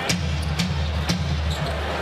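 Arena music with a steady, pulsing bass line, over a basketball being dribbled on a hardwood court, about two bounces a second.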